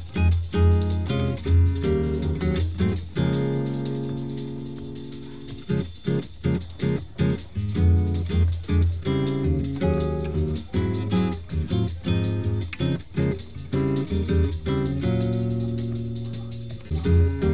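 Bossa nova music: a nylon-string acoustic guitar plays syncopated chords with light percussion. About three seconds in, a chord rings out for a few seconds before the rhythmic strumming resumes.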